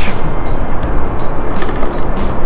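Steady, loud wind rushing over the microphone, with wheel rumble on a concrete road from a moving scooter; background music plays underneath.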